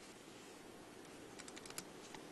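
A quick cluster of faint computer keyboard key presses, about six clicks, about one and a half seconds in.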